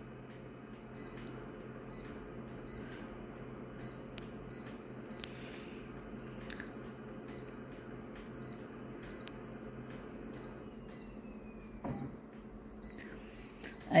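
Office colour photocopier humming steadily while its touchscreen is pressed, with a few short clicks and a faint high pip repeating about twice a second. A soft knock comes near the end.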